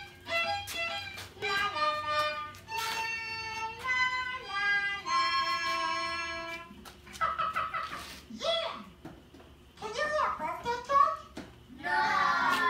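Violin-like bowed-string music: a series of held notes over a steady lower note, then in the second half shorter, wavering phrases mixed with a voice.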